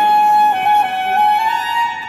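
Tenor saxophone holding one long high note that moves in small steps, ringing in a large hall's long reverberation.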